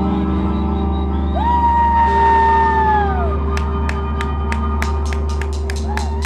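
Live post-punk band's droning intro: a steady low hum under a gliding electric tone that swoops up, holds and slides back down, then sharp ticks that come closer and closer together, building toward the song's start.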